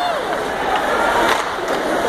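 Ice hockey arena crowd murmuring, with skate blades scraping on the ice and a sharp clack about one and a half seconds in.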